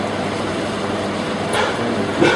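Steady, even background hiss of room noise with no distinct event, and a faint voice about a second and a half in.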